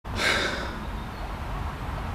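A short breathy exhale, like a sigh, close to the microphone about a quarter of a second in, followed by a steady low rumble.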